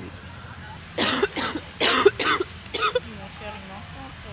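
A person coughing: a run of about five short, harsh coughs starting about a second in, then a faint voice in the background over a steady low hum.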